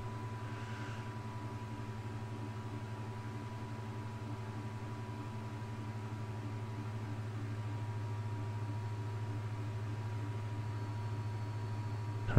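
A steady low electrical hum with a thin, faint high tone above it, unchanging throughout: the background noise of the recording setup.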